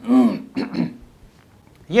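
A man clearing his throat: two short throaty sounds within the first second.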